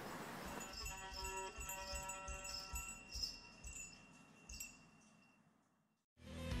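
Ankle bells jingling faintly in a steady beat, about two or three shakes a second, with ringing bell tones, fading away to silence near the end.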